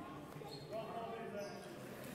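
Indistinct voices of several people echoing in a sports hall.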